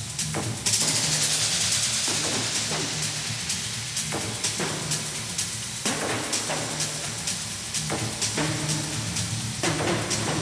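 Minimal techno over a club PA: a steady four-on-the-floor kick drum beat over a low bass line. About a second in, a bright hissing noise swell comes in sharply and fades out over the next two seconds or so.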